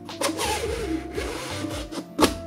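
3D-printed carbon-fibre PLA lattice shell rubbing and scraping as it is slid over a printed light diffuser tube, over soft background music.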